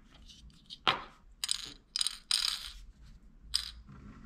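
Small plastic LEGO parts clicking and clattering: a sharp click about a second in, then a few short rattles as small round LEGO pieces are dropped into a small plastic LEGO bin.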